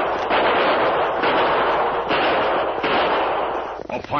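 Radio-drama sound effect of rapid, continuous gunfire, dense and unbroken on an old narrow-band recording. It stops just before the announcer's voice comes in.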